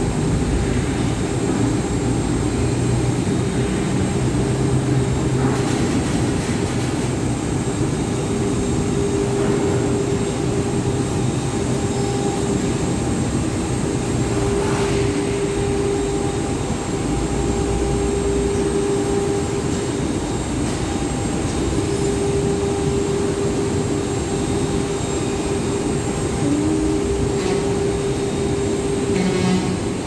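Steady, loud din of heavy industrial machinery running, with a low rumble under a humming tone that keeps breaking off and coming back.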